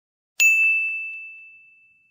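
A single bell-like ding sound effect, struck about half a second in, ringing with one clear high tone that fades away over about a second and a half.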